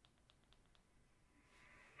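Near silence: faint room tone, with a few faint ticks in the first second.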